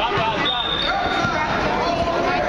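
A basketball bouncing on a gym floor during play, under the chatter of spectators' voices, with a brief high-pitched tone about half a second in.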